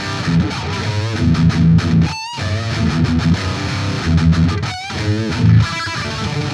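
Overdriven electric guitar played through a modded Marshall Silver Jubilee amp into a 4x12 cabinet. Chugging low riffs alternate with sustained lead notes shaken with vibrato, with two brief breaks, about two seconds in and near the fifth second.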